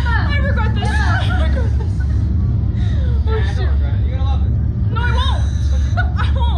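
Two young women laughing and exclaiming in high voices that glide downward in pitch, in short bursts, over a loud, steady low rumble.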